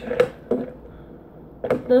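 A metal spoon knocking twice against a ceramic bowl as it stirs, followed by soft stirring in the bowl.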